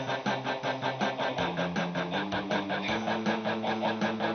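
Electric guitar played through an amplifier: fast, even strumming of chords, about eight strokes a second, with the low notes stepping upward in pitch through the middle of the passage.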